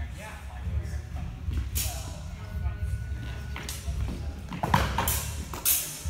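Fencers' feet stepping and stamping on a wooden floor in a large hall, a steady run of low thuds, with a few sharp clacks near the end as weapons or shield meet.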